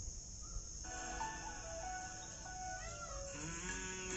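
Quiet background music: a melody of held notes that comes in about a second in.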